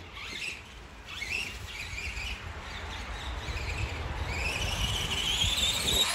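Electric motor of a 4x4 RC monster truck whining as the truck speeds up across grass, growing louder, its pitch rising over the last couple of seconds.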